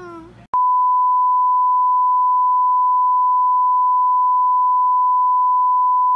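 A steady, loud 1 kHz test tone of the kind played with TV colour bars, starting abruptly about half a second in.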